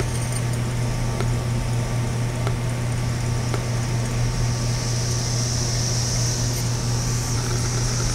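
A steady low hum with a high hiss over it that grows stronger about halfway through, and a few faint scattered clicks.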